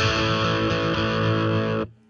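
A5 power chord struck once on a distorted electric guitar with P90 pickups, played through a Boss Katana amp. It rings out steadily and is muted abruptly near the end.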